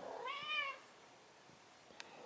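A domestic cat gives one short, soft meow about half a second in, its pitch rising and then falling.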